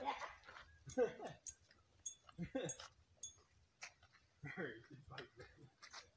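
Footsteps crunching on a gravel road, with a few brief soft laughs or murmured voice sounds.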